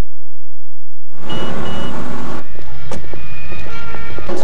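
Busy city street traffic noise starts about a second in, after a short lull. Two short high beeps follow soon after, and there is one sharp click near the three-second mark.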